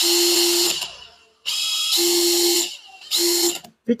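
DeWalt DCF850 brushless impact driver spinning with no load in three short trigger pulls. In the second pull the whine climbs in pitch as the variable-speed trigger is squeezed further.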